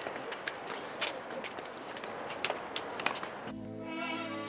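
Footsteps on a hard path, a few irregular sharp steps over steady outdoor background noise. About three and a half seconds in, soft string music with a violin comes in.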